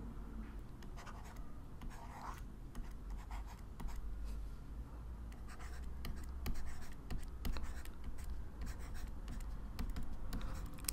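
Faint scratching and light tapping of handwriting strokes on a writing surface, a little louder for a moment around six to eight seconds in, over a steady low hum.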